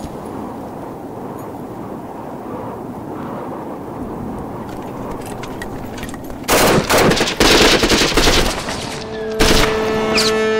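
Film soundtrack of automatic machine-gun fire. After a low, steady background rumble, a long loud burst of rapid shots breaks out about six and a half seconds in, with a second short burst near the end.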